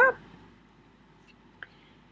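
Quiet room tone after the last word, with a single faint computer mouse click about a second and a half in, as a browser tab is switched.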